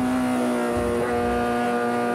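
Four-cylinder engine of an Integra race car, heard from inside the car, running at high revs with a steady, unbroken pitch.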